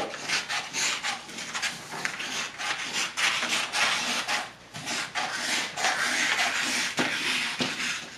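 Scissors cutting through paper in one long continuous cut, a dense run of rasping snips with the paper rustling, pausing briefly about halfway through.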